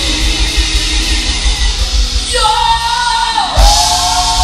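A female gospel quartet singing live with a backing band of drums and bass guitar. About two seconds in, a long held vocal note comes in, and near the end a loud drum-and-cymbal hit lands.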